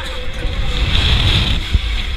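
Wind rushing over the microphone of a camera riding a swinging fairground thrill ride: a rough, buffeting low rumble with a steady hiss above it.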